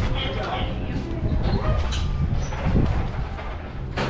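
Indistinct voices of people talking nearby, over a steady low rumble, with a few faint clicks.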